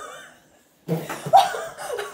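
A person laughing: a laugh trailing off at the start, then more laughter in short bursts from about a second in.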